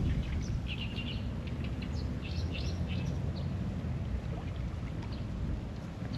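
Small birds chirping in short, quick bursts, thickest in the first three seconds and thinning out after, over a steady low rumble.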